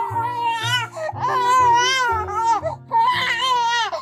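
A three-month-old baby crying in three wavering wails: the first short, the second longest, the third near the end.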